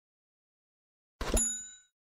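Notification-bell sound effect: after silence, a click and a bright bell ding about a second in, ringing with several high overtones and fading out within about half a second.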